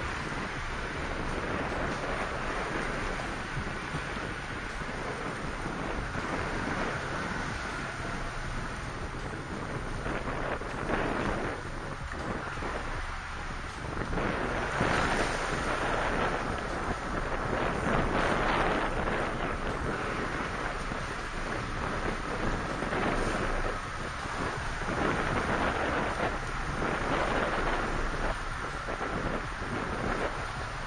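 Wind buffeting the microphone: a steady rushing rumble that swells louder in gusts.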